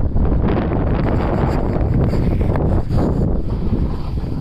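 Heavy wind buffeting the microphone while descending a groomed ski slope at speed, with a shifting hiss and scrape of edges sliding over packed snow.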